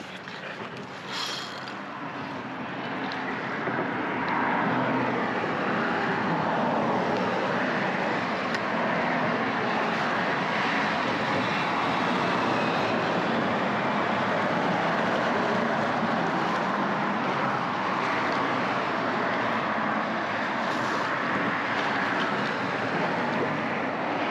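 Steady rushing noise of road traffic passing over the bridge. It builds over the first few seconds and then holds level.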